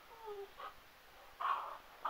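A dog gives a short whine that falls in pitch, then makes a louder, brief rough sound about a second and a half in.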